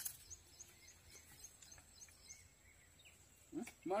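Faint outdoor ambience with a run of short high chirps, about four a second, through the first half, opened by a brief knock at the very start; a man starts talking near the end.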